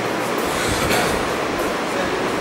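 Steady background noise, an even hiss with no speech.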